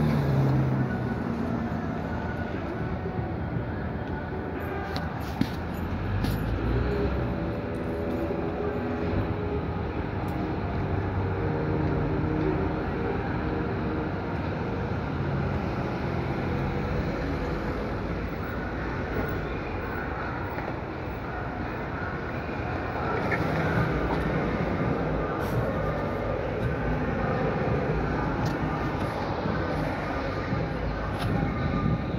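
Steady city street traffic noise: vehicles running past, with no single sound standing out.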